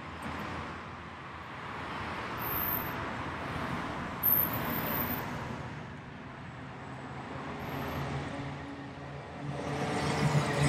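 Street traffic: cars passing one after another, their tyre and engine noise swelling and fading, with a short knock about four seconds in. Near the end the diesel engine of a garbage truck grows louder as it draws close.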